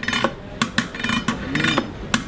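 A long metal ice cream paddle knocking and scraping against the metal tubs and lids of a Turkish ice cream (dondurma) stall, giving a rapid, irregular series of metallic clacks.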